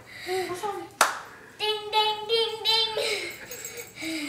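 A voice singing four held notes of a little tune, after a single sharp smack, like a clap, about a second in.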